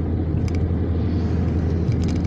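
Steady low rumble of a car driving at highway speed, road and engine noise heard from inside the cabin.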